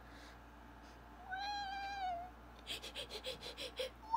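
A house cat meowing: one long drawn-out meow about a second in, followed near the end by a quick run of short clicks.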